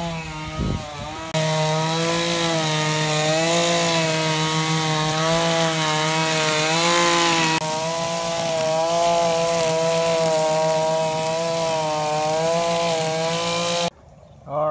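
Small two-stroke engine of a gas string trimmer running at part throttle, its engine speed wavering slowly up and down. It comes in suddenly about a second in.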